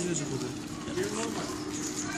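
Indistinct voices speaking briefly in the background over a steady faint hum.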